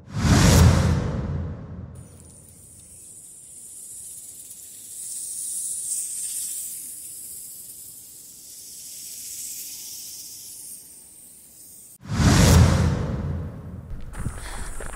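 Cinematic whoosh sound effects: a loud rush that swells and dies away in the first second, and another starting about twelve seconds in. Between them runs a soft, high hiss that rises and falls.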